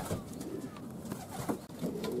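Racing pigeons cooing faintly.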